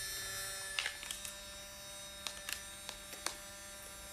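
Instax Mini instant camera humming steadily just after its shutter has fired, a faint electric hum with a few small clicks as its motor and electronics run.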